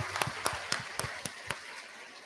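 Scattered applause: irregular single hand claps that thin out and stop about a second and a half in.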